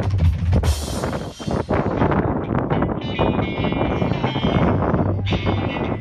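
Live band with a drum kit playing: steady kick-drum beats and dense drumming, with a cymbal crash about a second in. High sustained instrument notes join about halfway through.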